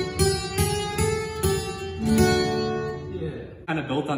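Acoustic guitar strummed in a steady rhythm, the chords ringing and then fading away about three seconds in, after which a man starts talking.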